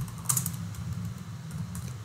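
Computer keyboard typing: a few keystrokes near the start.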